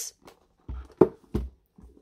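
Handmade hinged storage box being closed and handled: about three short knocks a second or so in, the middle one a sharp click, as its two halves meet and are pressed together.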